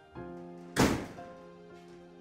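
Slow, sad background music with held keyboard notes, and a single loud thunk about a second in.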